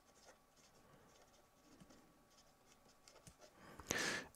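A felt-tip marker writing on paper, heard as a few faint ticks and scratches in near silence.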